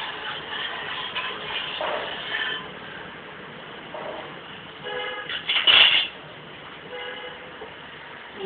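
Steel spoon clinking and scraping in steel cooking pots while stirring on the stove. About five seconds in there is a short pitched tone, followed at once by a louder harsh sound under a second long.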